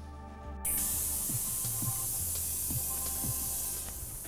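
A bus's pneumatic system letting out a long, even hiss of compressed air, starting suddenly about half a second in and cutting off just before the end, with background music underneath.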